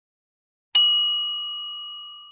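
A single bright, bell-like ding sound effect accompanying an animated logo: struck once, a little under a second in, then ringing on and fading away.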